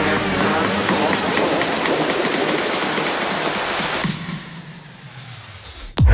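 Buffalo meat with garlic and green peppercorns sizzling on a cast-iron hot plate: a steady hiss that dies down over the last two seconds.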